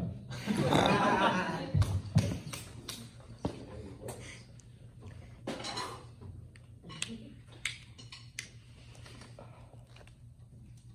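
Small handling sounds from a drummer at a drum kit without playing: a burst of rustling about half a second in, then scattered light clicks and taps.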